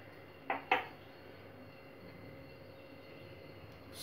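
Kitchen utensils being handled on a countertop: two light clinks about half a second in, a quarter-second apart, then low room tone.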